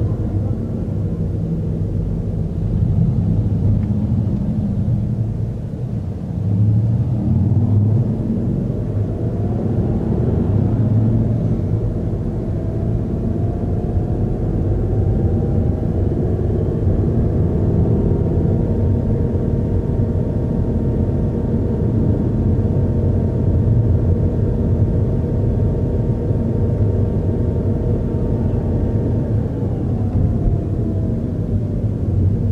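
Low rumble of a car driving, heard from inside the cabin. A faint whine rises in pitch around ten seconds in, holds steady, and falls away near the end.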